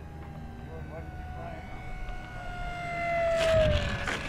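Electric motor and propeller of a 1100 mm RC Spitfire on a 3S pack, whining with its pitch slowly falling and growing louder as it comes in to land, then a rush of noise near the end as it touches down on grass.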